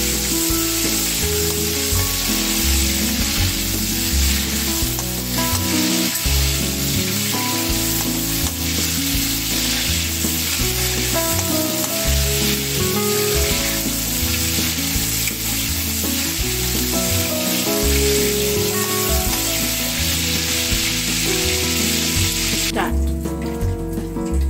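Prawns sizzling in hot oil in a wok as they deep-fry, stirred now and then with a metal spatula, over background music. The sizzling cuts off suddenly near the end.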